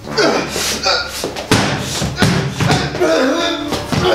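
Voices over a run of sharp, irregular thumps, several a second.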